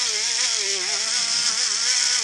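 Handheld rotary tool running at speed with a rouge-charged polishing wheel pressed against a cast sterling silver bullet. It makes a steady high whine that wavers in pitch as the wheel works around the bullet.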